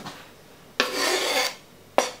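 A knife blade scraping across a plastic chopping board once, pushing food off it for under a second, followed by a sharp tap near the end.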